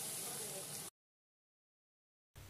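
A faint steady hiss for about the first second, then the sound cuts off suddenly to complete silence.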